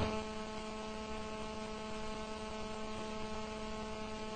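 Steady electrical mains hum: a low, unchanging buzz made of several steady tones, with nothing else over it.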